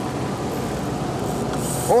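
A boat's engine running, a steady low rumble.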